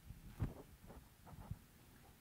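Handling noise from a handheld microphone as it is lowered and set down on a lectern: two dull thumps, the louder about half a second in and a second one about a second later, with faint rustles between.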